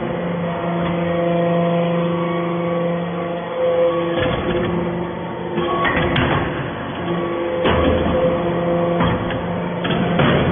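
Hydraulic stainless-swarf briquetting press running, with a steady hum from its hydraulic pump that shifts in pitch about four seconds in. Several sharp metallic clanks sound through the second half as the machine cycles.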